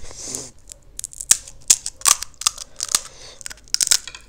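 Crisp, hollow panipuri (golgappa) shell being cracked open with a fingertip: a string of sharp, crackly snaps, after a short soft rustle at the start.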